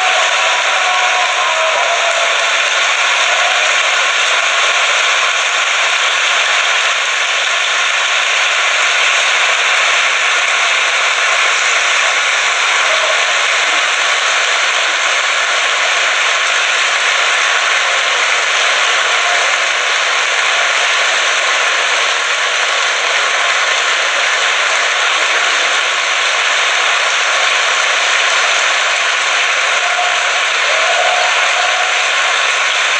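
Large audience applauding, a dense, even clapping that goes on without a break.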